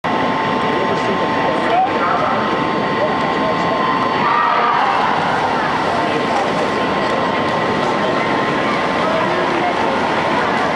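Spectators cheering and shouting in an indoor pool arena as a swimming relay gets under way, a steady wash of many voices.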